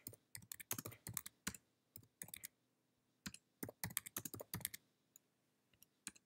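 Typing on a computer keyboard: quick bursts of keystrokes for short words, space bar and return, with brief pauses between the bursts. The typing stops about five seconds in.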